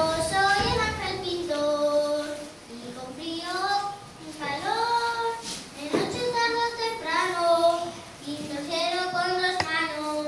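A child singing a melody solo, with long held notes that slide between pitches.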